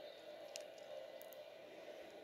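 Quiet room tone with a few faint clicks of plastic Lego minifigure parts being handled, one about half a second in and two close together just past a second.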